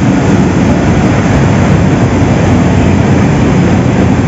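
Sugar-mill processing machinery running: a loud, steady low rumble and hum that does not change.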